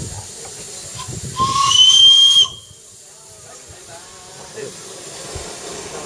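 Whistle of a live-steam miniature locomotive: one loud blast of about a second, with steam hiss and a slight rise in pitch at the start, that cuts off sharply.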